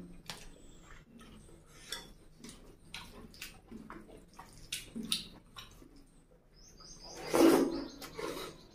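Close-miked wet chewing of curry and rice, with frequent small lip-smacks and mouth clicks, and one much louder wet mouth noise about seven seconds in as another handful goes in.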